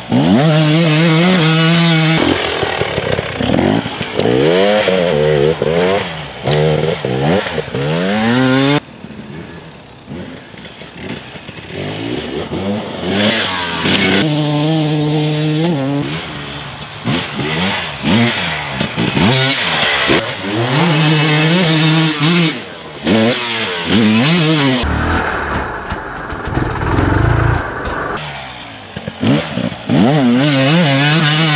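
The fuel-injected 300cc two-stroke engine of a 2022 KTM 300 XC-W TPI dirt bike, revving hard and rising and falling in pitch as it is ridden past several times. A deep low rumble comes in a few seconds before the end.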